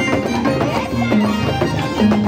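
Andean harp and violin playing a jarana: the harp's plucked bass and chord notes under the violin's melody, in a steady unbroken run of notes.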